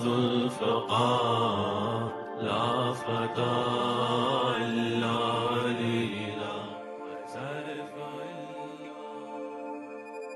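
Intro music of a chanted vocal over a low sustained drone, the voice rising and falling in long held phrases; it grows quieter in the second half and fades out near the end.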